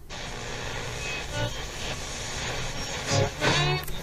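Old-radio-tuning sound effect opening a beat: a steady hiss of static, with warbling tones sweeping through it near the end.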